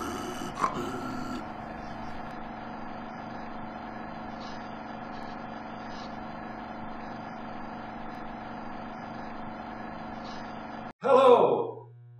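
A man's short groaning, gasping vocal noise in the first second or so, then a steady hum of several held tones with a few faint clicks, cut off suddenly about eleven seconds in by a man starting to speak.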